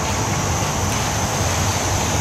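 Steady street ambience at night: a continuous low rumble and hiss like distant traffic, with no distinct events.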